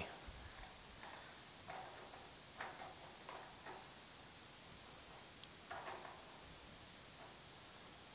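Quiet room tone with a steady hiss and a few faint, brief scrapes of a sheet-metal patch disc being pressed and shifted against the edge of a hole in a truck cab panel.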